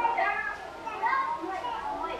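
A group of young children's voices chattering and calling out over one another.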